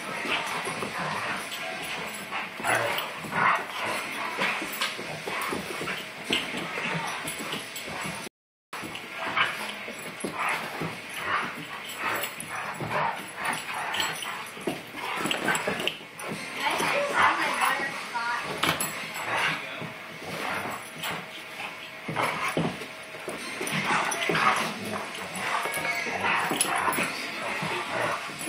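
Two dogs play-wrestling, with irregular yips, whimpers and short barks. The sound drops out briefly about eight seconds in.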